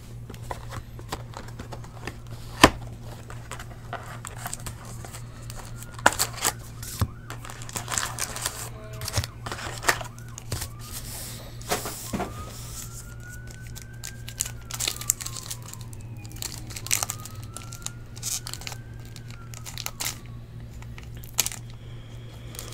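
Foil card-pack wrappers crinkling and tearing, with scattered clicks and taps as packs and cards are handled. A faint wail that rises and falls in pitch comes in during the second half.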